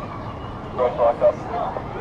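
A few short, indistinct spoken syllables about a second in, over a steady outdoor background hiss.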